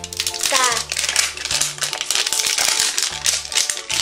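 Plastic wrapping on an LOL Surprise toy ball crinkling and crackling as it is peeled off by hand. Background music with steady low notes plays underneath.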